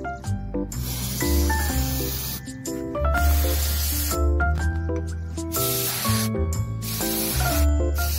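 An aerosol wound spray hissing in long bursts onto an injured monkey's wound, over background music with stepped notes and a low bass.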